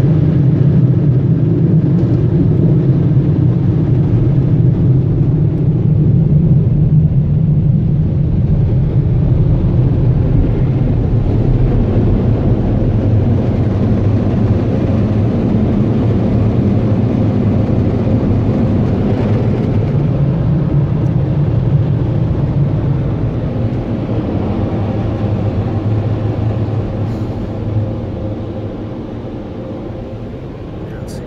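Car wash air dryers blowing hard on the van: a loud, steady roar heard from inside the cabin, easing off in the last few seconds.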